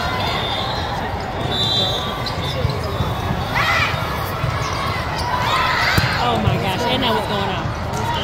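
Volleyball rally in a large hall: ball hits and bounces, with a sharp impact about six seconds in, over a constant din of players' and spectators' voices, with shouts in the middle of the rally.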